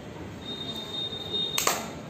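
A faint, thin, steady high-pitched tone lasting about a second, then one sharp click about three-quarters of the way through.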